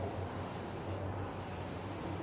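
Chalk scraping along a blackboard as straight lines are drawn: a steady scratchy rubbing, with a short break about a second in as the chalk moves from one edge of a box to the next.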